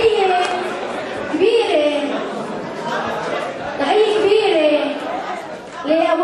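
Speech only: voices talking in a large hall, with chatter.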